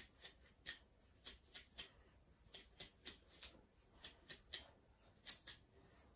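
Pink wide-tooth comb pulled through thick, coily 4c natural hair, giving faint, quick rasping strokes about three a second.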